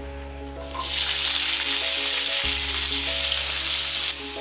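Hot oil in a non-stick pan sizzling loudly as sliced red onions are tipped in; the hiss starts suddenly under a second in and holds steady.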